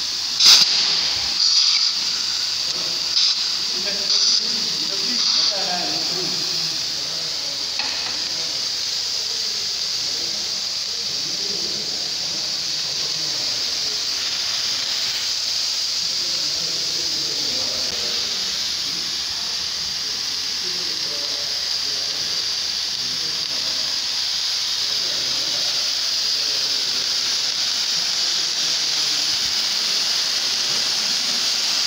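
CO2 fire extinguishers discharging: a steady, high-pitched hiss of gas escaping as the cylinders are emptied out. A few sharp knocks sound in the first five seconds.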